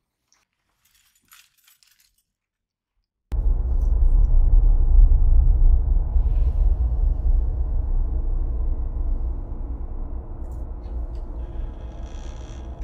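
Near silence with a few faint ticks, then about three seconds in a loud, low droning hum of a horror-film score starts suddenly and holds, easing off slightly toward the end.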